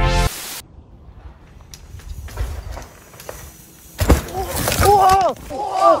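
A sudden loud clatter about four seconds in as mountain bikers crash on a wooded trail, followed at once by onlookers shouting "Oh!" several times. Before it, after the backing music cuts off, there is only low steady outdoor noise.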